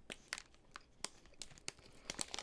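Popcorn being eaten and handled: faint, irregular crackles and crinkles.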